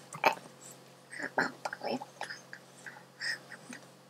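A person's faint, short vocal and mouth noises: a scatter of brief nasal grunts and clicks.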